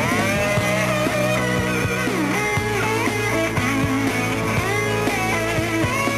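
Rock band playing an instrumental passage: a lead electric guitar line with gliding, bent notes over drums, bass and keyboards.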